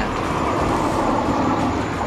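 Steady noise of a passing vehicle, swelling slightly about a second in.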